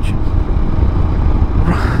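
Royal Enfield Himalayan's single-cylinder engine running at a steady cruise, mixed with a heavy low rumble of wind and road noise. A short laugh comes at the very end.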